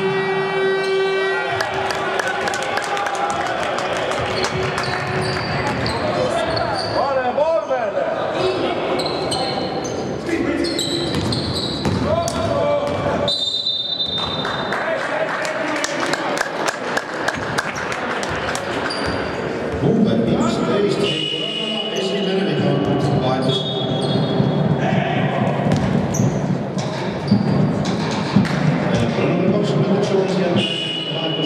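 Basketball game in play: the ball dribbled and bounced on the hardwood court many times, mixed with players' and spectators' voices.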